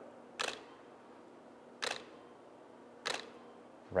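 Shutter of a tripod-mounted DSLR firing three single frames, each a short sharp click, about 1.3 seconds apart.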